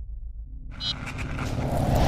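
Logo sting sound effect: a low pulsing rumble, then, about two-thirds of a second in, a whoosh that swells steadily louder, with a brief bright chime near its start.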